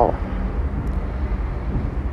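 Steady low background rumble with no clear events.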